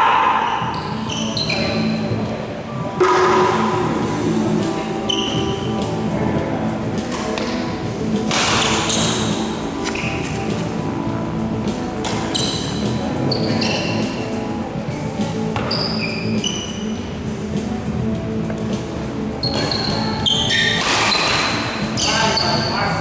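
Doubles badminton rally in a large hall: sharp racket strikes on the shuttlecock and short high squeaks of shoes on the court, over background music.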